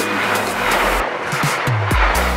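A Brightline passenger train rushing past close by at high speed, a dense rush of wheel and air noise, with the beat and bass of background music running underneath.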